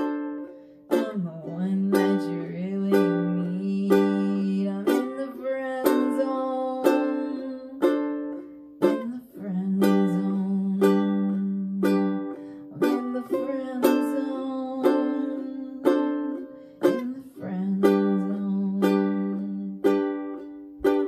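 Ukulele strummed in an instrumental passage of a song with no singing, a new chord or strum landing about every half-second to a second and ringing on between strokes.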